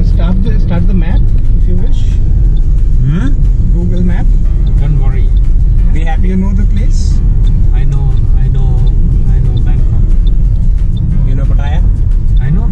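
Voices and music over the steady low rumble of a taxi driving through city traffic, heard from inside the cabin.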